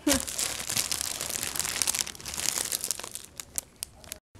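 Clear plastic wrapping crinkling and crackling as it is handled and pulled off a case, dense for about three seconds, then a few separate crackles near the end.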